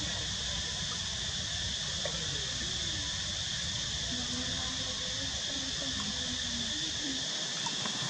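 Steady, high-pitched insect chorus.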